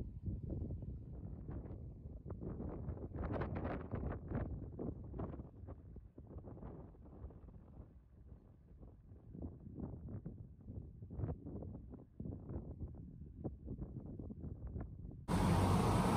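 Low, muffled rumble of wind and road noise from a moving car, rising and falling unevenly. Near the end it cuts abruptly to a louder, clearer car-interior sound.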